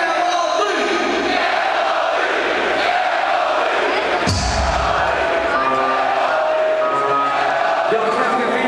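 Concert crowd shouting and cheering, then about four seconds in a heavy bass hit starts the rap-rock band's amplified music, which plays on over the crowd.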